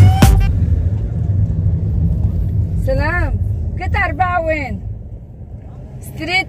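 Low rumble of a car's engine and road noise heard from inside the cabin, fading near the end. Music cuts off just after the start, and a voice speaks for a couple of seconds about halfway through.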